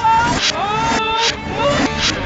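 A man's singing voice played backwards: long held notes that swell and slide in pitch, broken by short hissing bursts.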